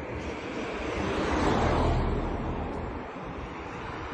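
A road vehicle passing by on the highway, its tyre and engine noise swelling to a peak about a second and a half in and then fading away.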